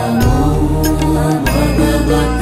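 Hindu devotional music with chanted singing over a steady low drone, punctuated by sharp metallic strikes every half second or so.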